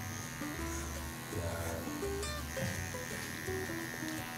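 Electric hair clipper fitted with a number 3 guard, buzzing steadily as it cuts along the side of a boy's head. Soft background music plays under it.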